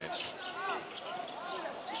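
Live basketball court sound: sneakers squeak twice on the hardwood floor as players jostle near the basket, over the arena's background noise.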